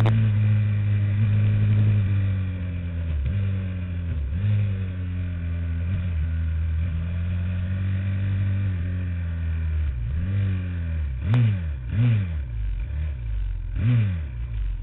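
Small motorcycle engine heard on board, held at steady revs with two short dips in pitch. In the last few seconds it changes to a run of quick throttle blips, the revs rising and falling about once or twice a second.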